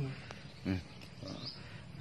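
A brief pause in a man's talk: one short spoken syllable about two-thirds of a second in, otherwise only faint room noise.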